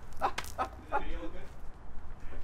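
A few short, quick vocal calls, then one longer call about a second in that wavers in pitch.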